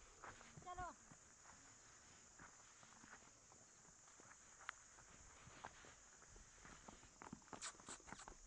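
Faint, irregular footfalls on bare rock from a horse and people walking, with a short vocal call just under a second in.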